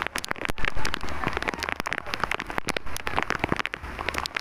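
Dense, irregular crackling and tapping, many sharp clicks in quick succession over a low rumble, loudest about a second in.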